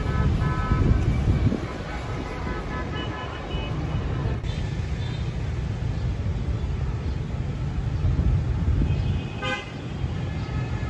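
Wind rumbling on the microphone over distant street traffic, with a short car-horn toot near the end.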